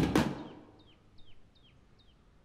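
Background music with a drum hit fades out, then a small bird chirps repeatedly, about two to three short downward-sliding chirps a second.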